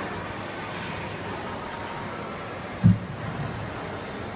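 Steady background hum of a shopping-mall concourse, with one brief low sound about three seconds in.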